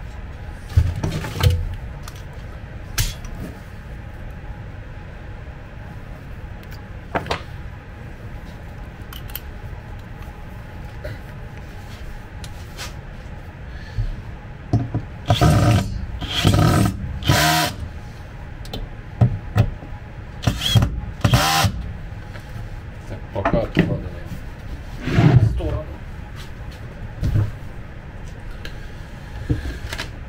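Cordless drill-driver run in short trigger bursts, driving screws through a metal drawer runner into a chipboard cabinet side. Four quick bursts come close together about halfway through, with more spaced bursts and knocks of handling around them.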